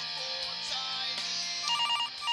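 Guitar theme music plays. Near the end a desk telephone starts ringing with a rapid electronic two-tone trill.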